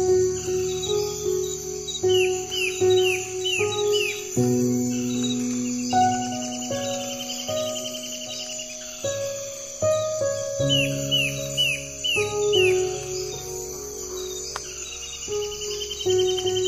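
Soft, slow instrumental music of sustained piano and guitar notes, laid over a nature-sound track. Birds chirp in short runs of about five quick descending calls, twice, with a warbled trill between them, over a steady high insect chirring like crickets.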